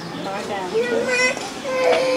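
High-pitched children's voices talking and calling.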